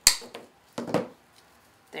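Wire cutters snipping through the wire stem of a decorative hand pick with one sharp click, followed about a second later by a duller knock as the cutters are set down on the table.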